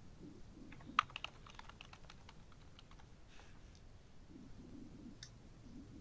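Faint typing on a computer keyboard: a quick run of key clicks starting about a second in, then a single click near the end.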